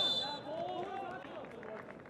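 The last moments of a referee's whistle blast, a shrill steady tone that cuts off about half a second in, stopping play for a foul. Players' shouts overlap it and trail off over the next second.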